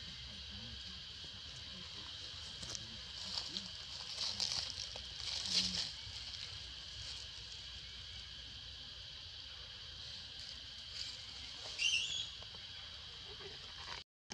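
Outdoor ambience with a steady high-pitched insect drone, broken by bursts of crackling about three to six seconds in and a short high chirp near twelve seconds.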